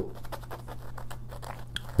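Fingertips scratching and tapping the crusty top of a bagel, a dense run of small dry crackles and clicks picked up close.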